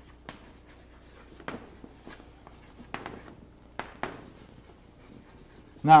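Chalk writing on a blackboard: an irregular string of short taps and scrapes as a word is chalked out, over a faint low steady hum.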